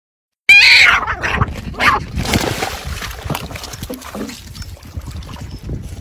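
Two cats in a face-off, yowling and growling at each other. The loudest, wavering cry starts about half a second in, and the rougher sounds fade lower after it.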